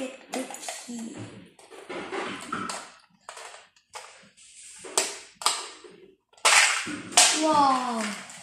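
Sharp clicks and rattles of a small plastic treasure box being handled and opened by hand. A child's voice is heard near the end.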